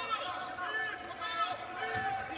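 Basketball game sound on a hardwood court: two short sneaker squeaks, one about half a second in and one near the end, and a ball knock, over arena crowd noise.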